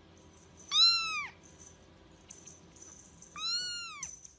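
A small kitten mewing twice: high-pitched calls that rise and then fall. The first comes about a second in and is the louder; the second comes near the end.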